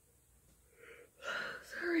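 A woman's heavy, breathy exhale, a tired huff as she comes down from stretching, running into a few spoken words near the end.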